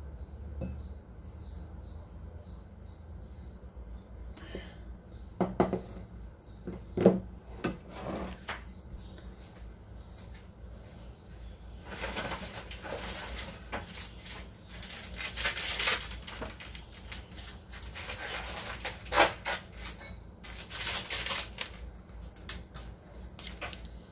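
A silicone spatula scraping thick cake batter out of a stainless steel mixing bowl into another bowl, with a few sharp knocks against the bowls about five to eight seconds in. Then a longer stretch of rustling and scraping noises.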